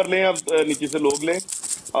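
A person speaking over a crackly live-stream voice call.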